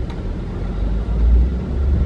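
Low, steady rumble of a car heard from inside its cabin, swelling slightly about a second in.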